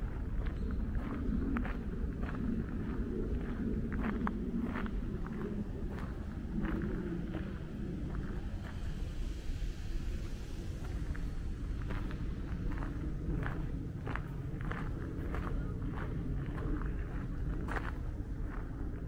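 Footsteps of a person walking along a garden path at an even pace, about two steps a second, with a few seconds of fewer steps in the middle. Under them runs a steady low rumble.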